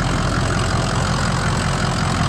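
Ford 6.0-litre Power Stroke V8 turbo diesel idling steadily, heard up close with the hood open: an even, low rumble.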